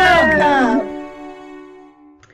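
The end of a song with several voices gliding up and down over it, stopping under a second in. A last chord then rings on and fades away.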